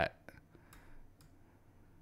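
Three faint computer mouse clicks, about half a second apart, as an EQ filter is set up in music software.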